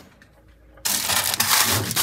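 Aluminium foil crinkling as it is peeled off a bowl of cold porridge. The sound starts suddenly about a second in.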